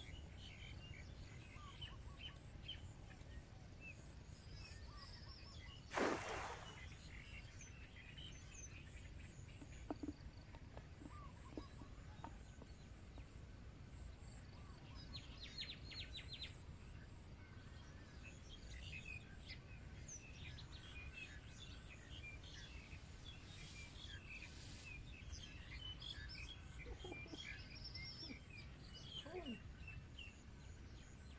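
Birds chirping in many short scattered calls over a steady low rumble of wind on the microphone, with one brief loud rush of noise about six seconds in.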